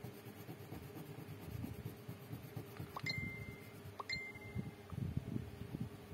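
Colouring on paper: a green colouring tip scratching in short, quick back-and-forth strokes across the page. Two brief high ringing pings sound about a second apart midway through.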